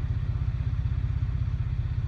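Car engine idling, heard inside the cabin as a steady low rumble with a fast, even throb.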